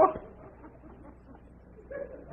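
A short, high-pitched vocal exclamation at the very start, then only the low steady hum and hiss of an old television soundtrack.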